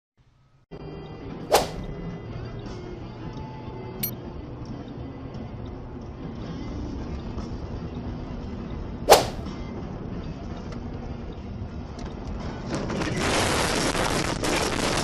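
Steady rumbling road and engine noise of a car driving, with two sharp loud cracks, one about a second and a half in and one about nine seconds in, and louder rushing noise near the end.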